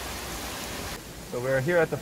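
Steady hiss of falling water that drops away suddenly about a second in, after which a person speaks.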